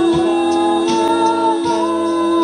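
A cappella vocal group holding a sustained chord without words. The upper parts shift to new notes about a second in, over a steady bass voice, with a few mouth-drum hits.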